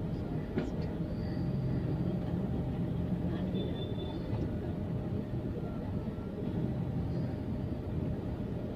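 Busy street ambience in a crowded market lane: a steady low rumble of traffic and footfall under a murmur of crowd voices, with a brief faint high tone about three and a half seconds in.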